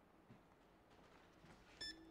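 Near silence, then near the end a single short electronic beep from an iRest hand massager as it is switched on, followed at once by a low steady hum as the massager starts running.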